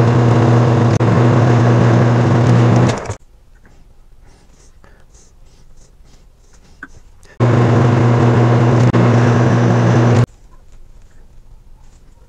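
Metal lathe running under power while single-point cutting a 5/8-18 thread: a loud, steady machine hum that stops abruptly about three seconds in. After a quiet stretch of small clicks from handling the part, it runs again for about three seconds and stops.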